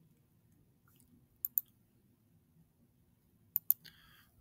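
Computer mouse button clicking: two quick double clicks about two seconds apart, with near silence between them.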